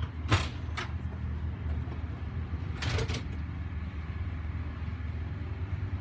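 A steady low mechanical hum, with a couple of short knocks in the first second and a brief rustle about three seconds in.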